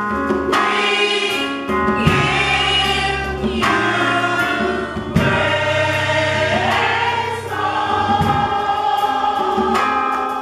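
Gospel choir singing in harmony with keyboard accompaniment, holding chords in phrases of a second or two over a low sustained bass. About six and a half seconds in, the voices slide upward into a new held note.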